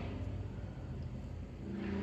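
Steady low background hum, with a faint voiced sound from the man starting near the end.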